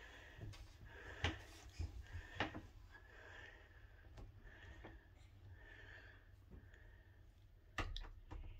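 A white interior door being pushed shut by a baby from inside the room: a few faint knocks and bumps in the first couple of seconds, then a sharper click just before the end.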